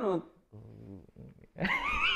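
Men's voices: a short spoken word, then a faint low murmur, and about one and a half seconds in a man breaks into a loud, wavering laughing cry.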